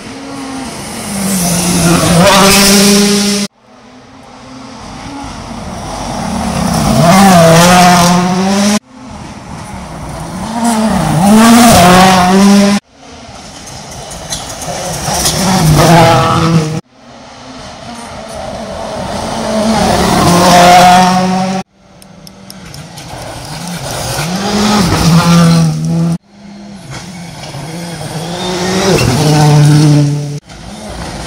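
A string of World Rally Cars driven flat out on a gravel stage, about seven passes in all. Each comes closer with its turbocharged four-cylinder engine revving up and down through gear changes and growing louder, and each is cut off abruptly by an edit.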